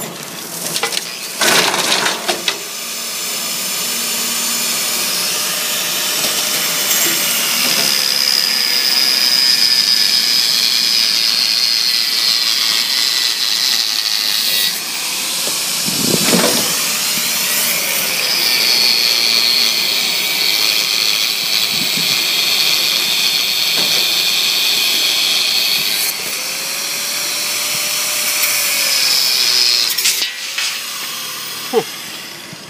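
Tractor running with its rear rotary mower cutting tall grass: a steady hissing noise with a high whine, the engine pitch rising and falling a few times.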